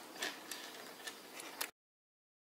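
Faint small clicks and ticks of black acrylic beads knocking against steel memory wire as they are threaded on by hand, a few scattered ticks. The sound cuts off abruptly near the end.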